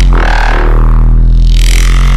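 A loud, steady low buzzing drone, with a higher sound sweeping upward over it.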